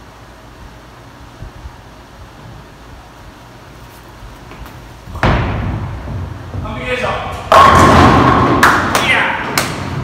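Bowling ball delivered onto a lane: a sudden thud as it lands about five seconds in, a rumble as it rolls, then a loud crash of pins about two seconds later with pins clattering for a couple of seconds.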